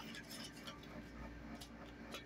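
Faint small clicks and light handling noises of stickers and paper mail being sorted by hand, over a steady low background hum.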